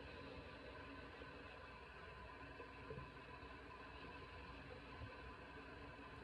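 Near silence: faint room tone with a light steady hiss and a couple of barely audible soft ticks.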